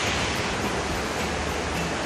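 Steady rushing of flowing water echoing inside a limestone cave.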